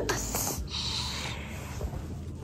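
A person's breath: a short hissy puff of air starting about half a second in and lasting under a second.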